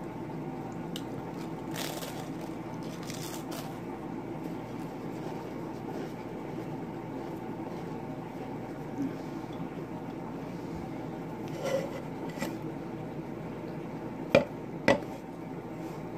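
Potato chips being chewed with the mouth close to the microphone, a few crisp crunches early on and again later, over a steady low hum. Two sharper clicks come near the end.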